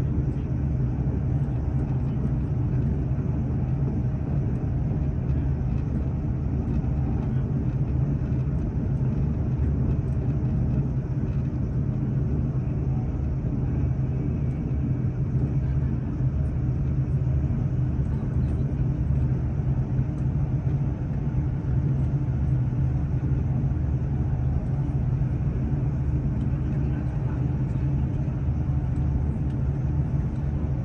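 Steady low rumble of a moving vehicle heard from inside it, with a constant drone and no changes of pace.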